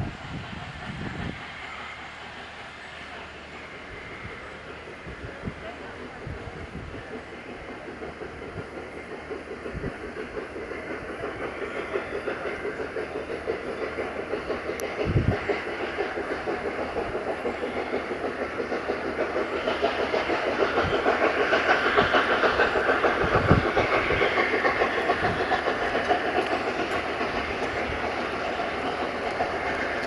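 BR Standard Class 8 Pacific 71000 Duke of Gloucester, a three-cylinder steam locomotive, hauling a train of coaches. Its exhaust beats in a fast, steady rhythm and grows louder as it draws nearer, loudest about two-thirds of the way through, with a few dull low thumps.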